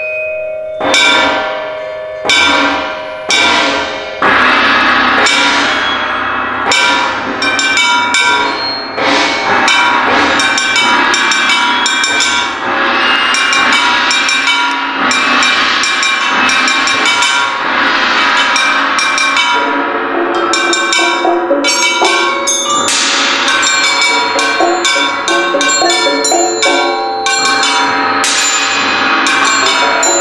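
Percussion quartet playing a contemporary concert piece. It opens with a few separate struck notes that ring on, then from about four seconds in becomes a dense, continuous texture of overlapping strikes and ringing pitches.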